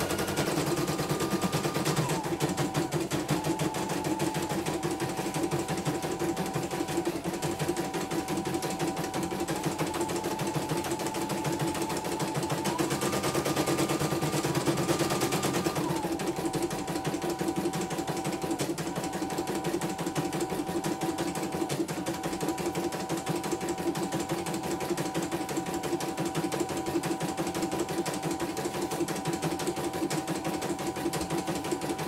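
Computerized household embroidery machine stitching: a fast, steady needle clatter under a motor whine that steps up and down in pitch several times, rising about halfway through and dropping back a few seconds later.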